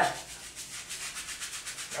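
Hand brush scrubbing a soap-lathered scalp in fast, even back-and-forth strokes, several a second.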